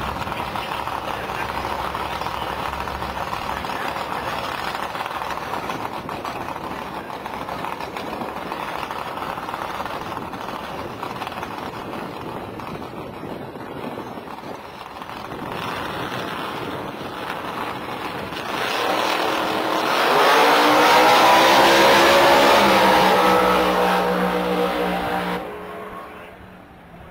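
Ford Mustang drag car's V8 idling at the start line, then launching at full throttle about twenty seconds in, the engine note climbing steeply in pitch as it accelerates away down the strip; the sound falls off sharply just before the end.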